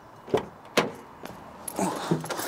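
Car door being opened and a person climbing into the driver's seat, heard from inside the cabin: three sharp clicks and knocks about half a second apart, then bumping and rustling near the end.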